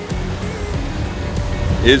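Background music with faint melody notes over a low rumble of wind and sea noise; a voice starts right at the end.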